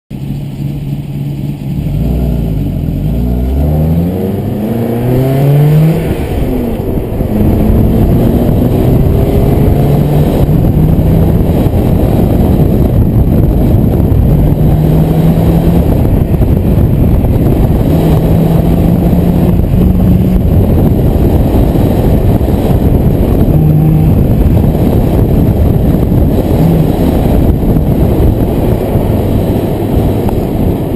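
1995 BMW 318i four-cylinder engine accelerating hard, its pitch climbing steeply twice in the first six seconds. After that it runs at high revs, rising and falling with the throttle through the course, under heavy wind and road noise from the open driver's window.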